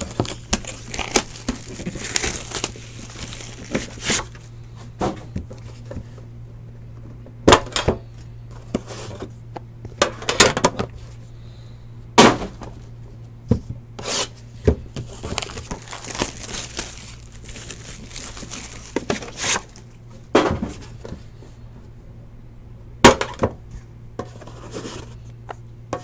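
Plastic shrink-wrap being torn and crinkled off a sealed Panini Immaculate Baseball hobby box, with irregular sharp clicks and knocks as the box is handled and opened. A steady low hum runs underneath.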